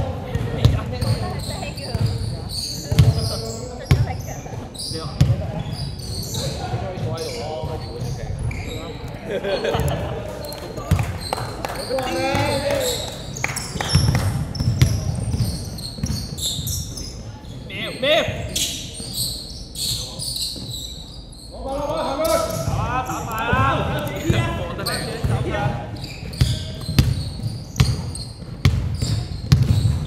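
Live game sound in a reverberant indoor sports hall: a basketball bouncing repeatedly on the court as it is dribbled, with players' voices calling out now and then.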